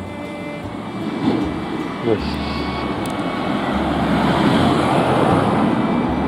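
A minivan approaching along the street, its tyre and engine noise growing steadily louder as it nears.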